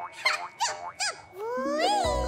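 Cartoon squeaks: four short high squeaks, each bending up and down in pitch, then a longer squeak rising in pitch near the end.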